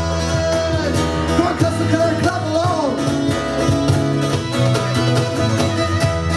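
Live folk band playing an instrumental passage: a bowed fiddle melody with sliding notes over strummed acoustic guitar, electric bass guitar and a steady cajon beat.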